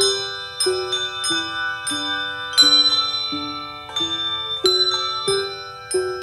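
Handbell choir playing, struck chords about every two-thirds of a second, each left ringing.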